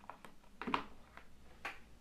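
Quiet room tone with a few brief, faint clicks and knocks of hand handling at the bench, the clearest one about three quarters of a second in.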